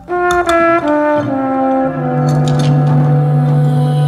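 Jazz music: a trombone plays a quick descending run of notes, then holds a long low note, with light percussion clicks.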